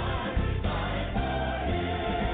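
A military service song sung by a choir with band accompaniment, played at full volume over a stadium sound system.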